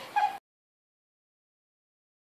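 A short exclamation from a person's voice, cut off abruptly a fraction of a second in, then dead silence.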